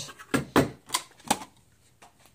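Hard clear plastic packaging clicking and crackling as it is handled and pulled apart by hand: about four sharp clicks in the first second and a half, then quiet.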